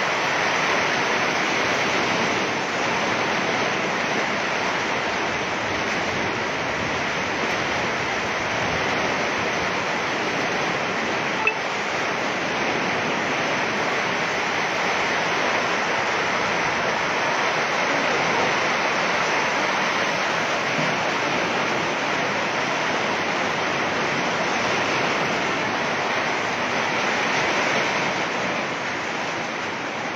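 Heavy rain mixed with hail beating on corrugated metal roofs: a steady, dense hiss throughout, with one sharp click about eleven seconds in.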